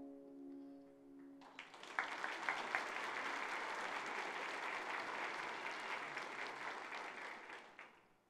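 The last sustained notes of a veena and electric guitar duet ring out and fade. About a second and a half in, audience applause starts and carries on, dying away near the end.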